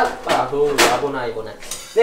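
A metal utensil clinking against the side of a stainless steel stockpot as pasta is stirred in boiling water, several separate clinks.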